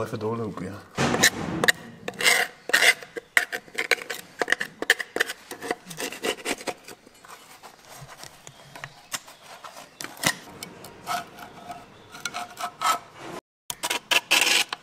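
Metal scraper blade scraping thick, syrup-like old oil sludge off the casing of a Type 69 tank gearbox, in quick, irregular strokes of blade on metal.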